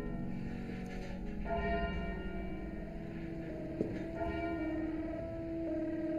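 A church bell rung by hand with its bell rope, tolling slowly: two strokes, about one and a half and four seconds in, each ringing on into the next.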